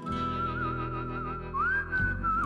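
Background music: a whistle-like melody wavering with vibrato over sustained low chords, stepping up to a higher held note about one and a half seconds in.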